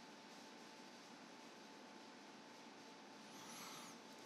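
Near silence: a faint steady hiss with a thin steady tone under it, and a brief faint sound near the end.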